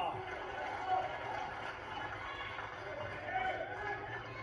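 Indistinct talking from a television broadcast, with no clear words.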